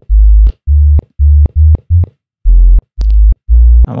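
ZynAddSubFX synth bass patch, soloed, playing a looping line of short, deep sub-bass notes, about eight in the four seconds. Each note starts and stops with a click, caused by the forced release setting in the patch's envelope.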